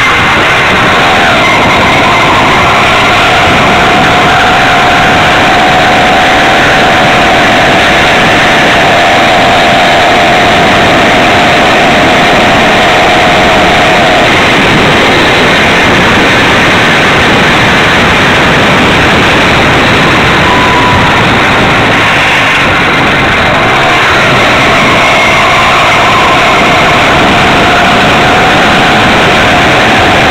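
Small two-stroke engine of a motorized Stingray Stealth bicycle running while riding, a loud steady drone with a held pitch that fades out in the middle and comes back near the end, over heavy wind and road noise.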